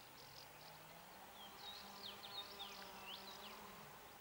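Faint buzzing of a flying insect: a low hum that rises in pitch in the first second and drops away near the end. A small bird's quick high chirps and whistled notes come in from about one and a half to three and a half seconds in, and are the loudest sounds.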